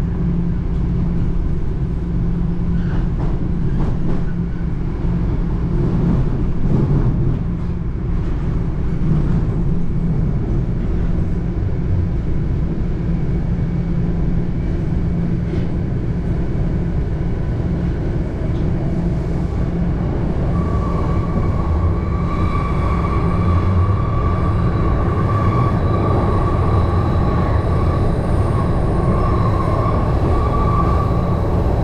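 Toronto Rocket subway train heard from inside the car as it runs through the tunnel, a steady low rumble of wheels and running gear. About two-thirds of the way through, a steady high whine joins the rumble and holds.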